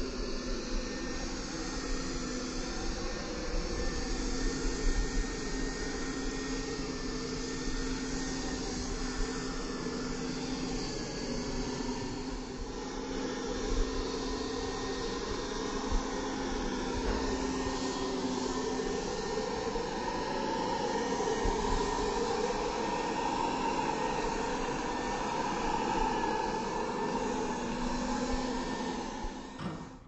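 Compressed-air paint spray gun hissing steadily as it coats a steel door panel, with the air compressor running and a low hum that comes and goes.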